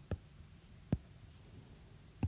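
Two short clicks about a second apart over a faint low hum.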